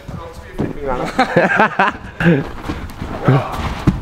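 Men's voices talking and calling out in a large hall.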